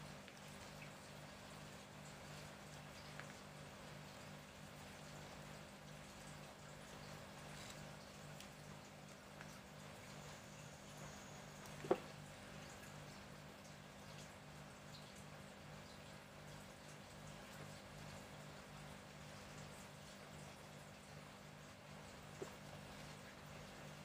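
Near silence: faint room tone with a low, evenly pulsing hum, broken by one short click about halfway through and a fainter one near the end.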